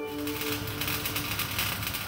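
Crackling, sizzling hiss of sparks, with many fine ticks like an electric welding arc, over a held music note that fades away.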